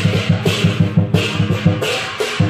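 Lion dance percussion: a big drum beaten in rapid, even strokes, about five a second, with repeated cymbal crashes.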